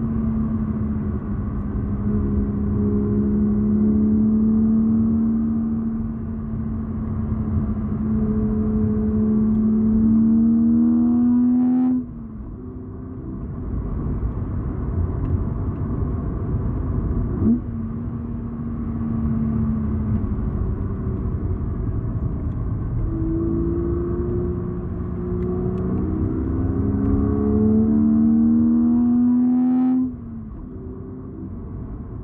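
BMW Z4 coupe's straight-six engine pulling hard, its note climbing steadily under road and wind rumble. The note falls away sharply about twelve seconds in, then builds and climbs again, dropping once more near the end.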